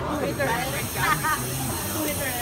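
Steady hiss of compressed air from the Supreme Scream drop tower's pneumatic launch system, starting abruptly, with people talking underneath.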